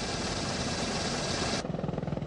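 AH-64 Apache helicopter flying, a steady rushing engine-and-rotor noise over a fast low blade beat. About one and a half seconds in, the high hiss drops away and leaves mainly the low rotor beat.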